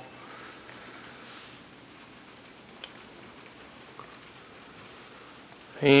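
Quiet garage room tone: a faint steady hiss with a couple of small clicks.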